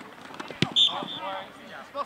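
A football kicked for an extra point: one sharp thump of the foot on the ball about half a second in, followed by a short shrill whistle blast and shouting voices.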